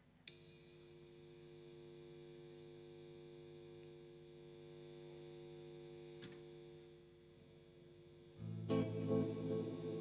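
Electric guitar through effects holding a quiet, steady chord, then swelling into a louder, fuller chord about eight and a half seconds in. A faint click or two sounds over it.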